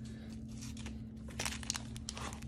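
Light handling of cards, then from about a second and a half in, the foil wrapper of a Magic: The Gathering collector booster pack crinkling in the hands as it is picked up to be torn open. A steady low hum runs underneath.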